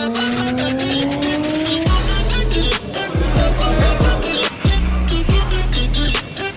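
Background music: a rising synth sweep builds for about two seconds, then a beat drops in with deep bass hits that slide down in pitch and sharp drum hits in a steady rhythm.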